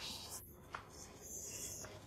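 Japanese hand plane (kanna) being drawn along a wooden board, its blade taking thin shavings with a faint, light hissing scrape. There are two strokes, one at the start and one in the second half.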